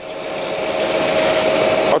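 Rushing noise of an approaching vehicle with a steady hum, growing louder and cutting off abruptly at the end.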